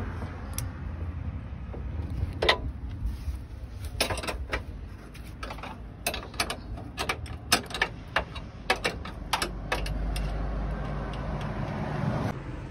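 Irregular metallic clicks and knocks of hand tools and screws being worked while the step's mounting bolts are fitted. A low steady hum comes in near the end.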